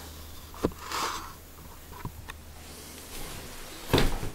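Low steady hum of an electric potter's wheel motor, fading out about three seconds in, with a few small handling clicks, a short hiss about a second in, and a knock right at the end.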